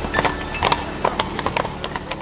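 Hooves of a pair of carriage horses clip-clopping on cobblestones, an uneven run of sharp clops several a second.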